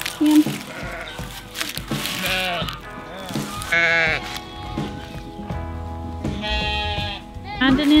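Sheep bleating several times, short wavering calls over background music.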